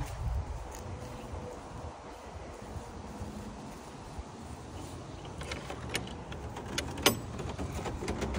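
A low rumble of wind and handling on the microphone while walking, then a few light clicks and one sharp clack about seven seconds in, as a backyard gate and its latch are worked.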